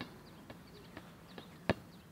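A football kicked once: a single sharp thud near the end, after a few faint taps.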